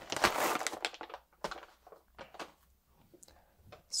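Coffee beans rattling in a small stainless-steel dosing cup for about a second, then scattered light clicks and taps as the cup is handled and lifted off the scale.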